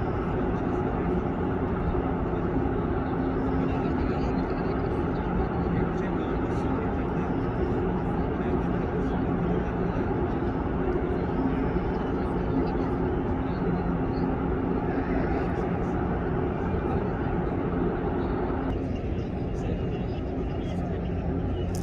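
Steady outdoor din of indistinct crowd voices mixed with a low machinery hum. Its higher part drops away abruptly near the end.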